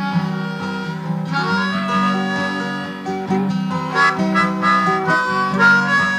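Harmonica playing a melody in held, wavering notes over guitar accompaniment, an instrumental break in a folk-rock song.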